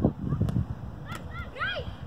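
Sharp smacks of a football being kicked, two of them in the first half second. Brief high-pitched shouts from young players follow near the middle, over a low rumble of wind on the microphone.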